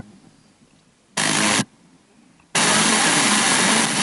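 Tivoli Audio PAL+ radio's speaker giving FM inter-station hiss in two bursts, a short one about a second in and a longer one from about two and a half seconds in, with near-silent muted gaps between as the tuner steps up the dial between stations.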